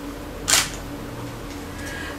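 A single short camera-shutter click about half a second in, over steady low room hum.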